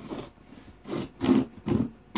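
Knife cutting along the packing tape of a cardboard box, in about four short scraping strokes.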